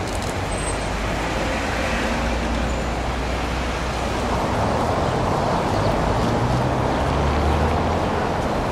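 Street traffic noise: a steady rumble of passing cars, louder in the second half as a vehicle engine's low drone comes through.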